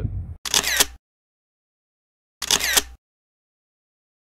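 Camera shutter sound effect, played twice about two seconds apart, each a short snappy click-and-whir, with dead digital silence around them.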